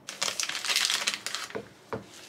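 Plastic wrapping of a kamaboko fish cake crinkling as it is pulled open and off, a busy run of rustles lasting about a second and a half. A light knock follows near the end as the fish cake is set down on a wooden cutting board.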